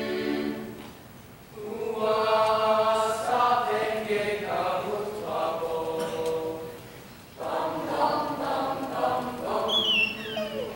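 Mixed chamber choir singing a traditional South African folk song in several parts, in rhythmic phrases broken by short pauses about a second in and again near seven seconds, with a high falling vocal slide near the end.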